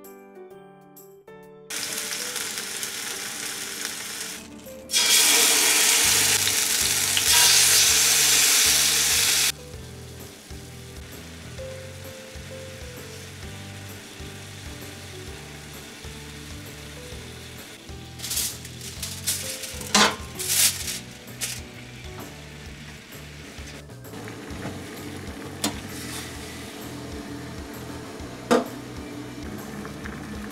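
Tandoori-marinated chicken pieces frying in oil in a steel frying pan, sizzling. It opens with a short stretch of music. A loud burst of sizzling lasts about four seconds, then settles to a steadier, quieter sizzle, with a few sharp clinks of chopsticks against the pan about two-thirds of the way through.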